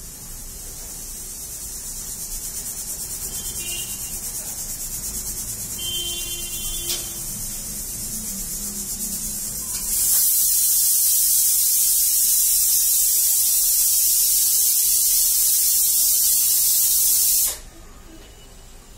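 A steady high hiss that builds gradually, turns much louder about ten seconds in, and cuts off suddenly just before the end. A few faint squeaks and a click come in the first half.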